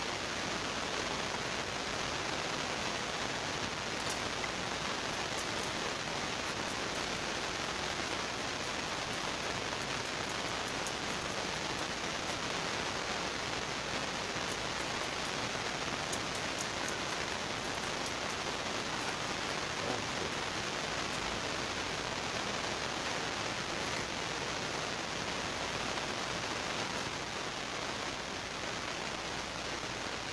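A steady, even rushing hiss throughout, with a few faint clicks.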